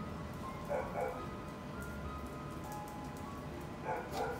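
A simple tune of single held notes plays in the background, with two short dog yips about a second in and another near the end.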